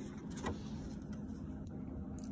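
A picture-book page being turned by hand: a faint, brief paper rustle over a steady low room hum.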